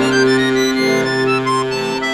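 Chromatic button accordion playing solo: a sustained low chord under a melody line, with the chord changing a little under a second in.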